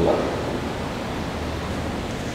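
Steady, even background hiss of room noise with no speech and no distinct events.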